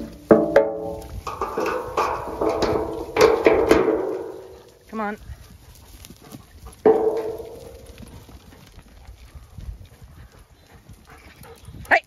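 Zwartbles sheep bleating, several calls overlapping in the first few seconds, then a short bleat and a longer one around seven seconds in.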